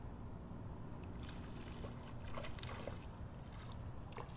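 Water splashing irregularly at the surface, starting about a second in, as a small hooked bass thrashes while it is reeled in, over a steady low rumble of wind on the microphone.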